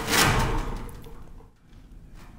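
A 40-pound replica set of the Book of Mormon gold plates, a stack of metal leaves, handled under its cloth cover: a short sound that starts suddenly and fades out over about a second.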